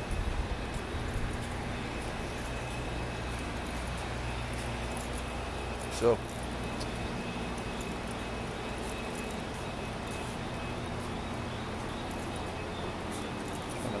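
Steady low machinery hum with a faint high-pitched tone held above it. The hum runs on unchanged.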